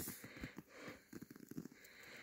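Near-quiet pause holding only faint, scattered rustles and small clicks of a hand moving over a dead deer's antlers and hide.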